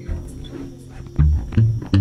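Guitars playing: a held chord stops at the start, then a little over a second in a riff of strong, low plucked notes begins, about two or three a second.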